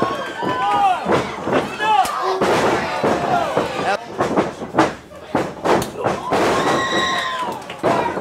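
Wrestling match audio: several sharp smacks and thuds of wrestlers striking each other and hitting the ring, under shouting voices, with one long held yell near the end.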